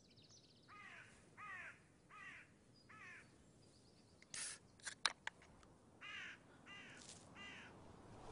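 Crow cawing: four harsh calls, each falling in pitch, then a pause with a brief rustle and a few sharp clicks, then four more caws.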